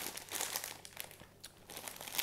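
Plastic packet of dried egg noodles crinkling as it is handled and turned in the hands, in irregular rustles with a short lull just past the middle.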